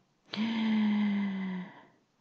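A woman's voice holding one steady, level hum-like hesitation sound for about a second and a half, with a breathy hiss. It starts and stops abruptly.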